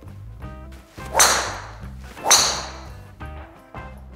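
Two golf driver shots, a titanium driver head (Titleist TS3) cracking into the ball about a second apart, each strike ringing briefly as it dies away. Background music with a steady beat plays throughout.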